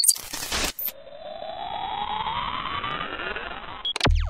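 Synthesized intro sound effects: a brief burst of glitchy digital static, then a swelling electronic sweep of several tones gliding apart, mostly rising, for about three seconds, cut off by a click near the end.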